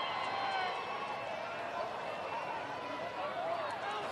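Soccer stadium crowd ambience: a steady murmur with scattered distant shouts and voices.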